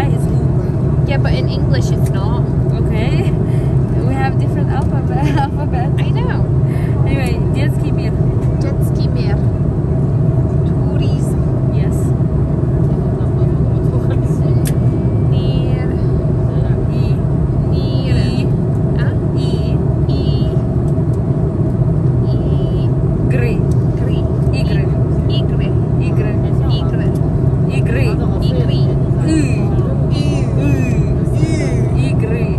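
Airliner cabin noise: a steady low drone throughout, with voices heard in short snatches over it.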